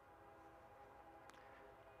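Faint, distant train horn holding a steady chord of several tones.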